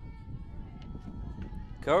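Wind blowing on the microphone at an outdoor softball field, a steady low rumble, with faint distant voices over it. Commentary speech begins near the end.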